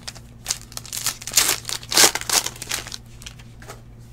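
Crinkling of a foil trading-card pack wrapper being handled, in a run of crackles from about half a second in until about three seconds, loudest near the middle.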